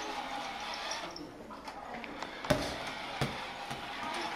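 Low hallway background noise with faint distant voices, and two sharp knocks about three-quarters of a second apart in the second half.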